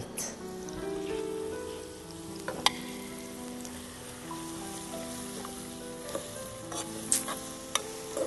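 Sliced onions and freshly added octopus pieces frying in oil in a deep pot, sizzling steadily as they are stirred with a spoon. A sharp clink of the spoon against the pot comes about two and a half seconds in, with lighter scrapes and clinks later.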